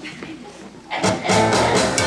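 A jazz band starts playing loudly about a second in, with low held bass notes and sharp rhythmic hits, after a moment of quiet room murmur.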